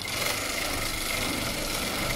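HighTex MLK500-2516N automatic pattern sewing machine running steadily at high speed, stitching heavy webbing, a dense mechanical whir with a thin steady whine over it.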